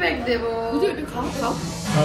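Speech: voices talking, some of them fairly high-pitched, with a short hissing sound near the end.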